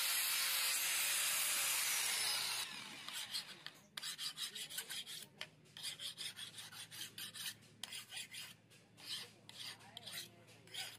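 Angle grinder disc grinding a steel knife blade, a loud steady hiss that stops about two and a half seconds in. Then a hand file rasps along the blade's edge in quick, repeated back-and-forth strokes, sharpening the edge.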